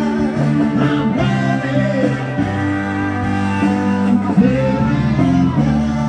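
Live band music with guitar over a steady, changing bass line.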